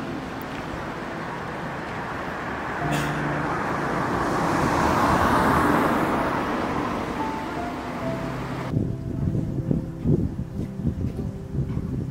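A car passing on a town street, its road noise swelling to a peak about halfway through and then fading, under background music. The street sound cuts off suddenly about three-quarters of the way through, leaving only the music.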